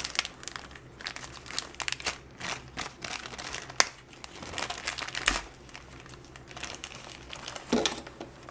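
Small clear plastic bag crinkling and rustling in the hands as it is opened and a small servo motor is unpacked, with irregular crackles and a sharp click about halfway through.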